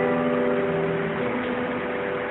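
Acoustic guitar chord ringing and fading away over the first second or so, leaving a steady hiss.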